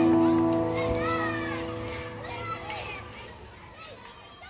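Last acoustic guitar chord of a song ringing out and slowly fading, with children's voices chattering and calling over it.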